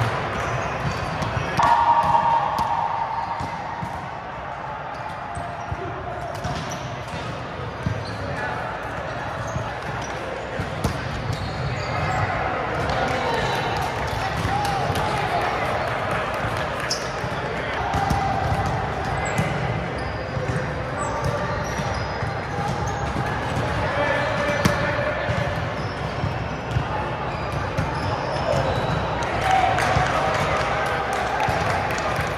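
Volleyball gym hubbub in a large, echoing hall: players' voices and chatter with scattered thumps of balls on hands and the hardwood floor.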